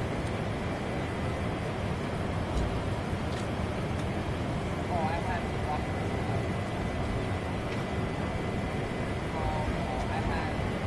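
Steady outdoor rushing noise with a deep, even body, and faint distant voices briefly about five seconds in and again near the end.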